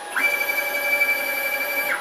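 6040 CNC router whining briefly as it moves the spindle head up to the tool-change position. The whine climbs in pitch just after the start, holds level, and drops away just before the end.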